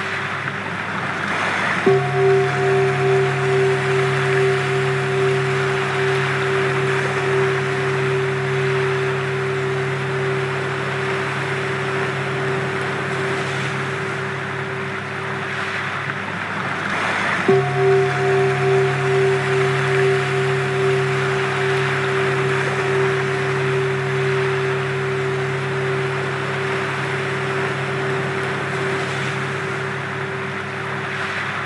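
Sound-healing frequency music: sustained steady tones held over a rushing noise bed that swells now and then. A new tone comes in about two seconds in and again about halfway through, pulsing at first before it settles into a steady hum.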